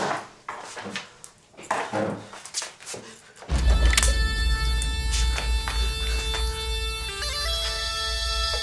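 A few scattered knocks and movement sounds, then from about three and a half seconds in, background music enters: a deep steady drone with long held notes over it, like bagpipes.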